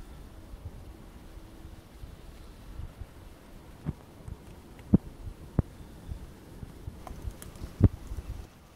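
Black bear cub licking and chewing at fur close to the microphone: a few sharp, irregular mouth clicks, the loudest about five seconds in and just before the end, over a low rumble of wind on the microphone.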